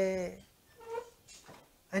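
A man's lecturing voice holding a drawn-out syllable at one steady pitch, then a pause with only a brief short voiced sound about a second in.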